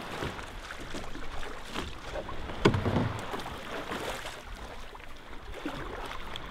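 Water splashing and lapping around a plastic sit-on-top kayak as it is paddled, with one sharp knock about two and a half seconds in.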